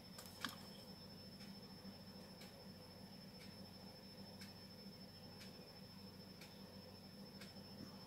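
Near silence: room tone with a faint steady hum and a few faint, light ticks, the clearest about half a second in.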